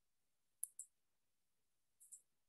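Faint computer mouse clicks: a quick pair of sharp clicks about half a second in, with another pair starting at the very end.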